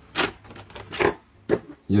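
Three short knocks and scrapes of hard ABS plastic parts being handled, the street-light housing and its mounting bracket being positioned, ending in a sharp click about a second and a half in.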